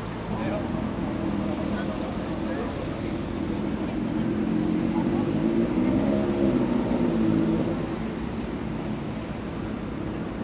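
Street traffic: a motor vehicle's engine grows louder, peaks around the middle of the stretch and fades as it passes, over a steady background of city road noise.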